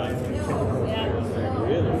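Indistinct voices of people talking, with no words clear enough to make out.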